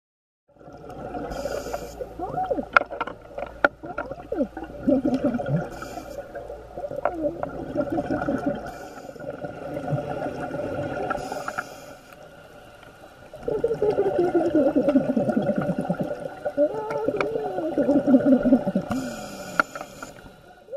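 Whale song: long moans and whoops sliding up and down in pitch over a steady hum, with a few sharp clicks in the first few seconds and a quieter lull about twelve seconds in.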